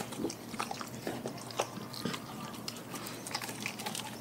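Dog eating a whole raw fish: irregular wet clicks, bites and crunches of its jaws on the fish.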